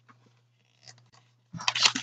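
Tarot cards being handled and laid out on a table: a few faint card clicks, then a quick flurry of cards slapping and sliding in the last half second, over a low steady hum.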